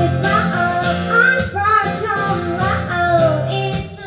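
A woman singing a melody while strumming a steel-string acoustic guitar in a live solo performance.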